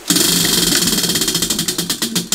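Tabletop prize wheel spun by hand, its pointer clicking rapidly against the pegs, the clicks spreading out as the wheel slows.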